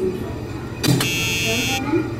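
A brief knock, then an electronic buzzer sounds about a second in, a harsh, high buzz lasting under a second that cuts off sharply.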